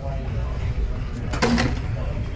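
Boxing gym background: a steady low rumble with voices in the room, and one short, louder sound about one and a half seconds in.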